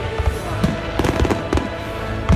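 Aerial fireworks going off with several sharp bangs in quick succession, over background music.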